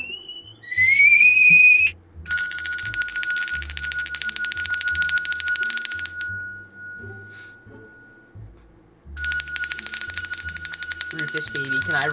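Small red hand bell shaken rapidly in two long bursts of bright, high ringing: the first runs a few seconds and fades out, and the second starts about a second later and runs to the end. Just before the first burst there is a short rising squeal.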